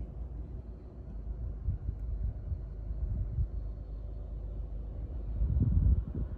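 VW Golf estate with a 1.4 TSI turbo petrol engine driving, heard from inside the cabin: a low, steady engine and road rumble that grows louder near the end, in normal drive mode.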